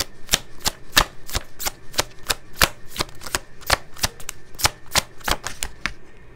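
A deck of oracle cards being shuffled by hand, with a crisp slap of cards about four times a second, stopping just before the end.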